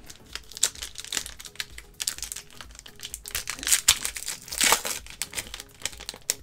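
Foil wrapper of a 1990 SkyBox basketball card pack being torn open and crinkled by hand: a dense run of sharp crackles, loudest about four to five seconds in.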